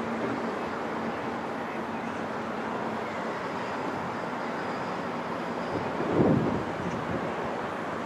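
Fire engine and street traffic heard from a height as a steady rushing road noise, with wind on the microphone. There is a brief louder low rumble about six seconds in.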